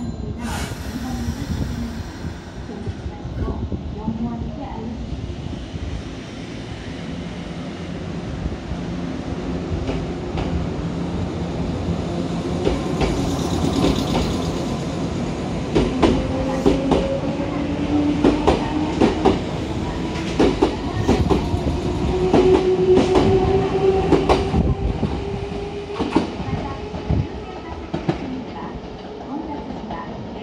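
A Nankai 6000-series electric train pulling out of a station and accelerating past close by: its traction motors whine in a slowly rising pitch, and the wheels click over rail joints in a quickening run of beats as the cars go by, fading in the last few seconds as the train draws away.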